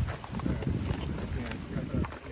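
A soupfin shark thrashing and rolling in the shallow wash over a cobble beach: splashing water with a run of quick knocks and clatters of stones.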